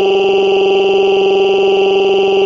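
A text-to-speech voice drawing out one long vowel at a flat, unchanging pitch, loud.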